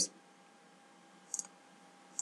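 A single computer mouse click about one and a half seconds in, a quick press-and-release pair, over faint room noise.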